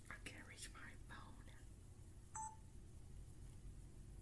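A single short electronic beep about two and a half seconds in, after faint, low mumbled voice sounds in the first second and a half; otherwise near silence, room tone.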